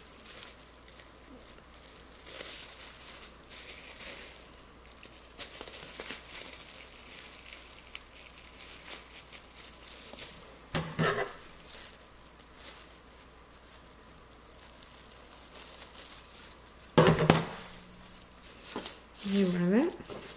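Thin plastic garbage-bag sheet crinkling and rustling as it is handled and wool is threaded through it, a steady crackle of small ticks, with two short louder sounds, one about halfway through and one near the end.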